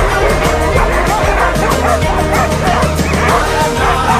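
Harnessed sled huskies barking and yipping, many voices overlapping, over background music with a steady low bass.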